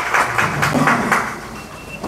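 Audience clapping in quick, fairly even claps after a speech, dying away about a second and a half in, with low voices murmuring underneath.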